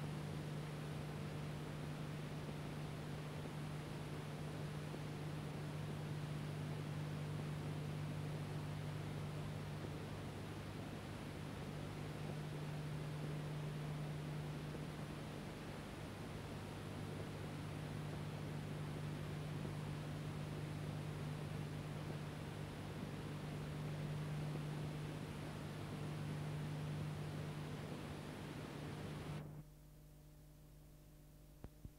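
Steady hiss with a low hum, the background noise of a silent archival film transfer, dropping away suddenly just before the end.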